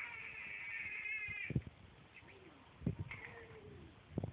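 A high-pitched, meow-like cry held for about a second and a half, wavering slightly, followed by softer, lower gliding vocal sounds and a couple of short thumps.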